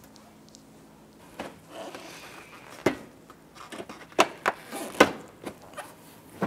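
Plastic bumper cover being pushed and worked into place by hand against the fender and headlamp, giving a string of sharp clicks and knocks, the loudest about three and five seconds in.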